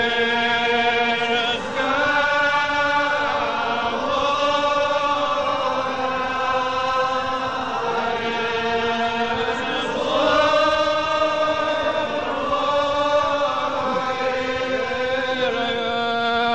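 Unaccompanied Gaelic psalm singing by a church congregation: slow, long-held notes that glide from one pitch to the next, heard from a cassette recording.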